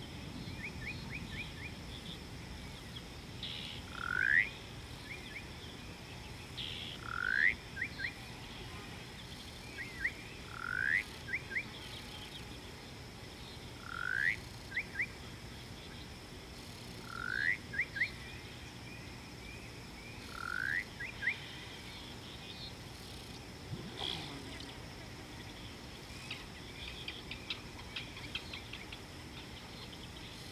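An animal calling over and over: a short rising whistle followed by two quick short notes, repeated six times about every three seconds. Fainter rapid chirps come near the start and near the end.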